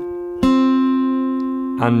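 Steel-string acoustic guitar capoed at the third fret: a single note is plucked about half a second in, most likely the open third string, and rings out, slowly fading.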